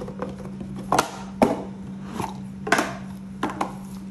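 Small cardboard gift boxes being opened by gloved hands: lids lifted off and boxes set down on a countertop, giving about five sharp taps and knocks with light rustling between them.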